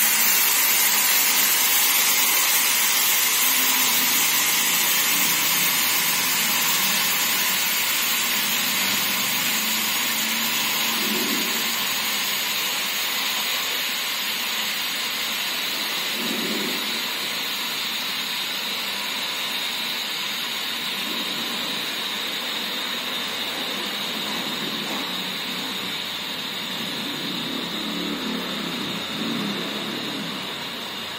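Single-post car washing lift running, its drive giving a steady whirring hiss while the platform moves; the sound fades slowly.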